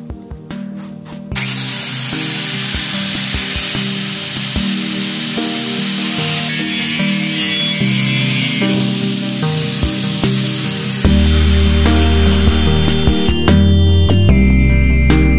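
Handheld angle grinder with a cut-off wheel cutting steel stock, switching on about a second in and running under load, with background music throughout.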